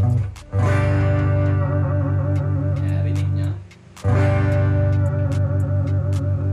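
Tagima TG-530 Strat-style electric guitar: a G chord strummed and left to ring, then strummed again about four seconds in. The ringing chord wavers in pitch, a vibrato from the whammy bar.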